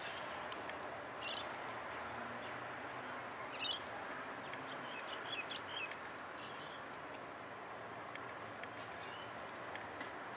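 Outdoor ambience: a steady background hiss with small birds chirping briefly several times, the loudest chirp a little over a third of the way in.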